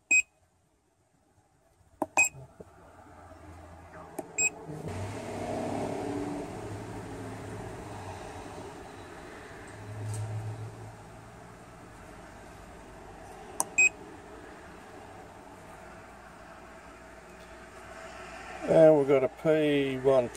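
Handheld Autel MaxiDiag Elite OBD scan tool giving short electronic beeps as its buttons are pressed to step through the menus: one at the start, others about two and four and a half seconds in, and one near fourteen seconds, over a low steady hum. A man's voice starts near the end.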